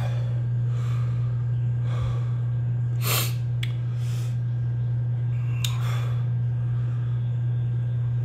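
A man breathing heavily, with several audible breaths in and out and one sharp gasp about three seconds in, as the burn of a spoonful of super hot pepper sauce builds in his mouth. A steady low hum runs underneath and is the loudest sound.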